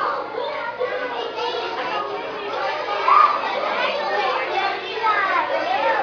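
Many young children chattering and calling out at once, with one louder short high-pitched call about three seconds in.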